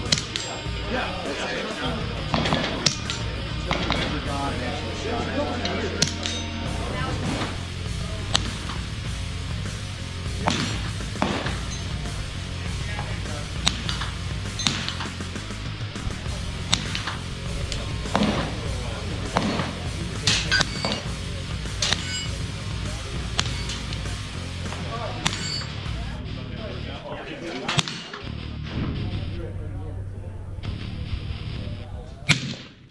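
Suppressed gunshots, sharp cracks at irregular intervals of about a second or two, some twenty in all. They are heard over steady background music.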